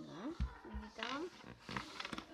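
A child's voice making wordless vocal sounds, its pitch sliding up and down, with two low thumps about half a second in.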